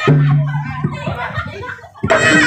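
Crowd voices over the music of a jaranan (jathil) performance: a loud low held note in the first second, then a few low knocks, with the sound dying away near the end.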